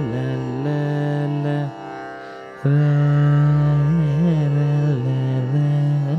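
Male Carnatic vocalist singing a wordless raga alapana setting out the ragas Sahana and Kanada: long held notes with ornamented bends (gamakas), over a steady drone. The voice drops out for a moment about two seconds in, then returns louder on a long held note.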